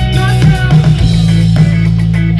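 Live band playing the opening of a song: drum kit keeping a beat over a heavy bass line, with electric guitar.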